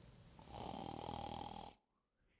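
One comic snoring sound effect, a single drawn-out raspy snore lasting a little over a second. It starts about half a second in and stops sharply just before the end.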